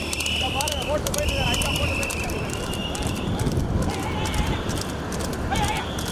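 Hooves of a racing horse pulling a two-wheeled sulky cart clip-clopping fast on asphalt, with people shouting over it.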